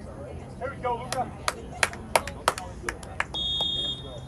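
Referee's whistle blown once near the end, one steady shrill tone of under a second, signalling that the penalty kick may be taken. Before it come a scatter of sharp hand claps and a few voices.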